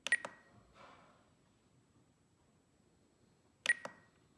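Spektrum DX9 transmitter beeping with clicks from its roller wheel as settings are scrolled and selected on its screen: a quick double click-beep at the start and another pair near the end.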